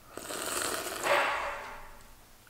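Drinking kimchi brine thinned with water straight from a glass kimchi jar: a sip that builds to its loudest slurp a little after a second in, then fades.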